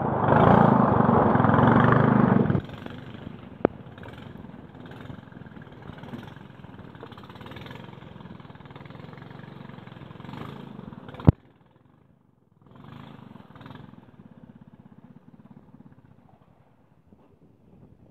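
Small boat's outboard motor running loud for the first couple of seconds, then dropping to a low steady run. A sharp click about eleven seconds in, after which it goes almost silent.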